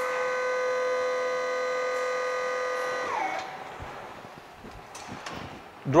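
Electric hydraulic unit of a Maxi Toppy pallet inverter whining steadily as it moves its forks to set the wooden pallet down. About three seconds in, the whine falls in pitch and winds down as the motor stops, leaving a low hum.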